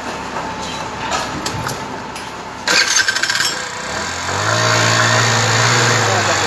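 50 cc scooter engine being started: a short burst of cranking about two and a half seconds in, then the engine catches and runs steadily at idle. It is the first start after a new drive belt has been fitted to its transmission.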